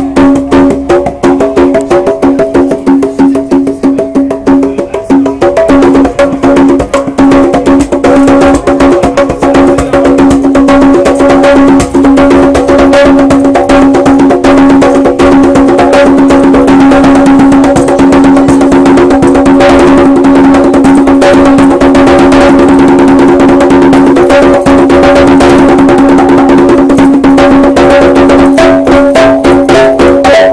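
A pair of conga drums played by hand in a fast, continuous rhythm of dense strokes over a steady low ringing tone, loud throughout.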